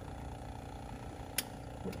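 A small toggle switch clicks once, sharply, about one and a half seconds in, switching on a light strip, over a steady low hum.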